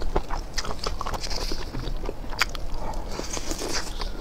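Close-miked chewing of grilled, spice-coated skewered meat: irregular wet clicks and smacks of the mouth, over a low steady hum.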